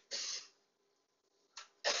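A short breathy exhale from a man's voice just after he finishes counting, then near silence: room tone.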